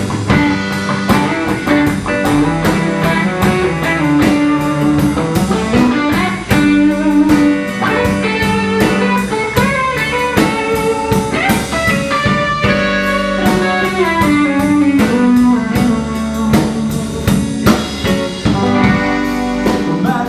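Live blues band playing an instrumental section: two electric guitars over bass guitar and a drum kit, with steady cymbal strokes keeping the beat.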